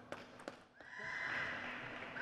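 Two light clicks of a table tennis ball bouncing, then about a second in a long, high-pitched cry of a person's voice starts and carries on.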